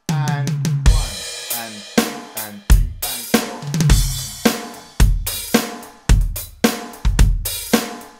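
Electronic drum kit played at a slow tempo: bass drum, snare backbeat and hi-hat, with a quick burst of four single strokes on the "and" of beat four leading into a cymbal crash on beat one.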